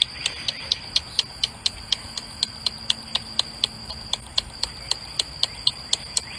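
Steady, evenly spaced clock-like ticking, about four ticks a second, laid in as a suspense sound effect.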